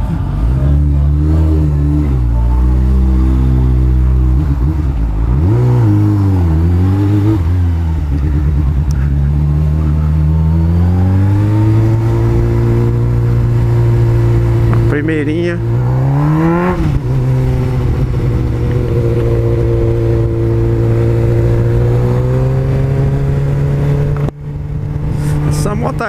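Honda Hornet's inline-four engine heard from the rider's seat, its pitch falling and rising with throttle and gear changes, then holding steady at cruising speed from about halfway, with a brief rev up and back down around the middle.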